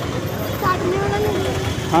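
Busy street-market traffic noise: a steady low rumble of idling motorcycle and auto-rickshaw engines close by, with voices of the crowd around it.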